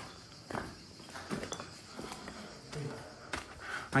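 Footsteps picking over rubble of broken floor tiles and wooden boards, a few separate knocks and scrapes of debris shifting underfoot.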